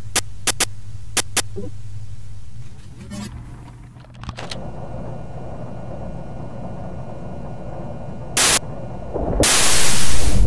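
Steady electrical mains hum with a few sharp clicks as a menu highlight moves, then hissy analog video-tape hum with faint steady tones. Near the end comes a short burst of noise, then loud static that swells up.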